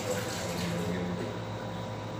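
A low voice speaking briefly, over a steady background hum.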